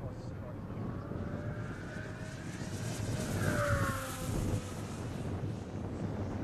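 Small electric RC model plane making a high-speed flyby: its motor and propeller whine climbs in pitch and loudness as it approaches, then drops in pitch as it passes about three and a half seconds in. Wind rumbles on the microphone underneath.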